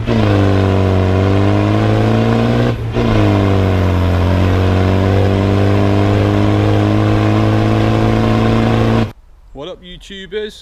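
Land Rover's 300Tdi diesel engine driving under way, its note dipping briefly about three seconds in and then running steady. The sound cuts off suddenly about nine seconds in.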